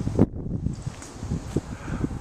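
Wind buffeting a handheld camera's microphone, heard as irregular low rumbling, with a sharp bump just after the start.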